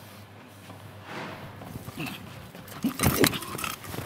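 Two heavyweight men shoving each other: after a quiet start, about three seconds in comes a burst of loud thuds and scuffling mixed with short grunts.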